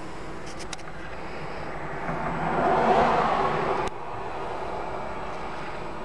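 A vehicle engine running steadily as a low rumble. A rushing noise swells over about two seconds and cuts off suddenly with a click about four seconds in.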